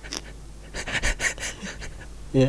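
Breathy, almost voiceless laughter: a quick run of short exhaled bursts through the nose and mouth, starting about a third of the way in.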